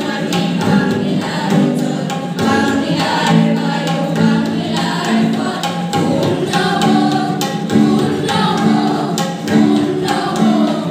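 A group of schoolchildren singing a song together in chorus into a microphone, the melody held in long sustained notes, with a faint steady beat underneath.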